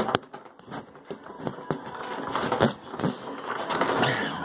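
Scattered clicks, knocks and rustling from a phone being handled and moved about while recording, with a sharp click at the very start.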